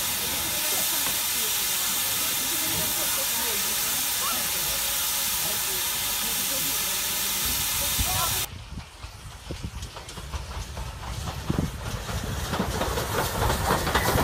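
Steam locomotive releasing steam: a loud, steady hiss that cuts off suddenly about eight seconds in. It gives way to the train running over a bridge, its wheels clattering on the rails and growing louder toward the end.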